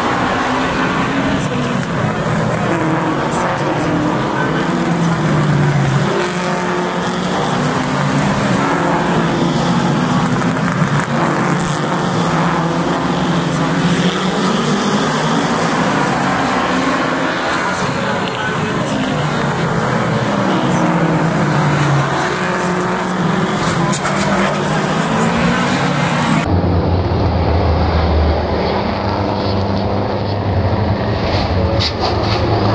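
V8 engines of American Cup stock cars circling a short oval at a slow pace, their pitch rising and falling as they pass. About 26 seconds in the sound turns suddenly duller and deeper as the pack comes close.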